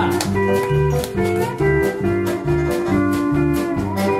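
Western swing band playing a polka live, with a walking low bass line and regular drum strokes keeping a steady beat under guitars and steel guitar.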